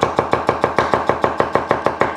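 Chef's knife chopping fermented cabbage on a wooden cutting board in a fast, even run of about seven chops a second.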